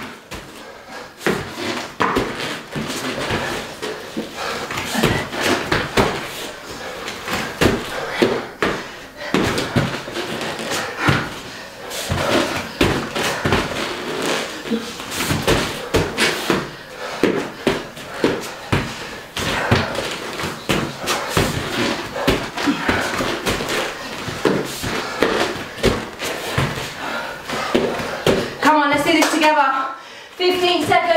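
Two people doing double burpees on a rubber-tiled floor: a steady, irregular run of thuds and slaps as hands drop onto the mat and feet jump back and land.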